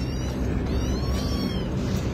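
A small kitten mewing, with a few thin, high-pitched cries around the middle, over a steady low hum.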